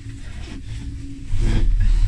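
Ski gondola cabin riding the cable: a steady low rumble with a faint hum, which grows much louder about a second and a half in.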